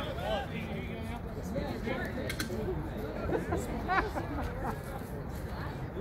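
Voices and chatter from players around the softball diamond, with a few short sharp knocks, the loudest about four seconds in.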